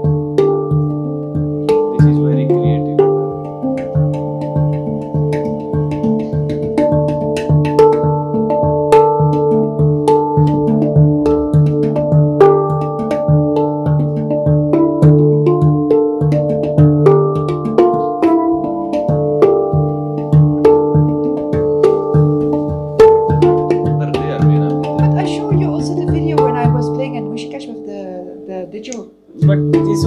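Handpan (hang drum) played by hand: a steady flow of struck, ringing steel notes over a low central note that keeps sounding. The playing fades near the end, breaks off for a moment, then starts again.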